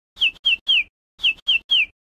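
Bird-tweet sound effect: a group of three quick, falling chirps, played twice about a second apart.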